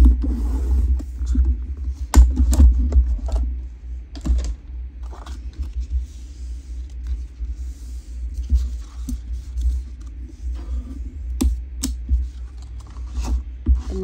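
Thick cardstock being scored on a paper trimmer and folded: the scoring blade and card scraping and sliding on the board, with paper handling and several sharp clicks and taps, the loudest about two seconds in and a few more near the end.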